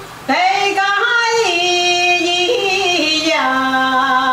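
An older woman singing alone, unaccompanied, in long held notes that step and slide between pitches, with a short breath about a quarter second in.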